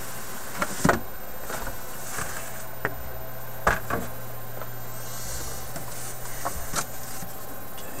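A cardboard box and the electronics kit inside it being handled as the kit is taken out: a few sharp knocks and bumps, the loudest about a second in and near four seconds, then rustling and scraping. A steady low hum runs underneath.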